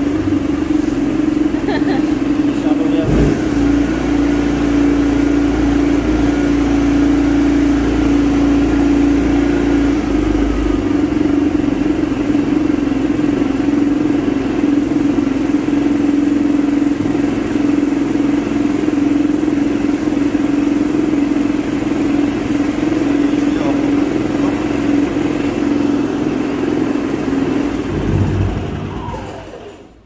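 Senci SC6000i 6 kVA petrol inverter generator running at a steady speed with an even hum; the sound drops away near the end.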